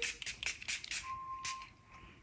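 Perfume atomizer sprayed in a quick run of short hissing spritzes that stop about a second and a half in. A faint, brief steady tone sounds partway through.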